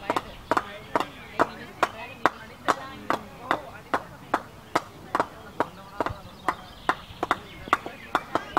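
Sharp clicking knocks repeating steadily, about two to three a second, with faint voices in the background.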